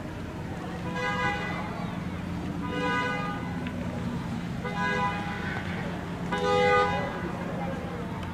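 Car horn sounding four times, each honk about half a second long and roughly two seconds apart, the last the loudest, over the steady low hum of idling cars.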